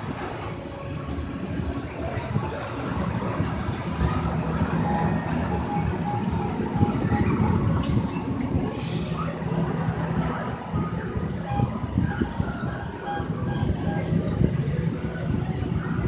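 Steady low rumble and rushing noise heard from inside a Ferris wheel gondola, with faint short tones coming and going.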